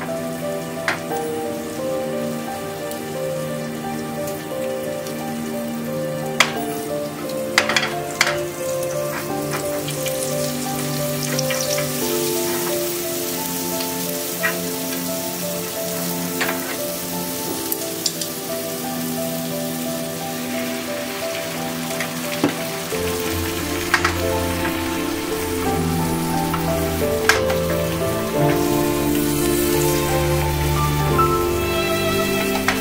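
Oil and a broth-heavy egg mixture sizzling in a rectangular tamagoyaki frying pan, heard as a steady fine hiss under background music. A few sharp clicks stand out along the way.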